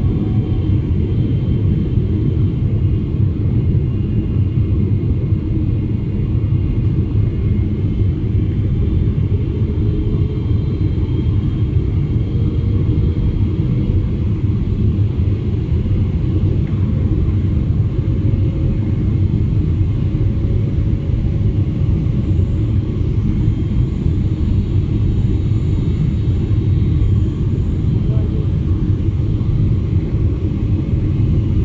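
Steady, unchanging low rumble of an airliner's cabin noise in flight, engines and rushing air, with faint steady higher tones over it.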